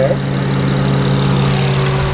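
Honda Pilot's 3.5-litre V6 engine idling steadily with the hood open, a low, even hum.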